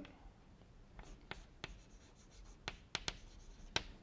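Chalk writing on a chalkboard: faint, scattered taps and short strokes of the chalk, about six of them over a few seconds.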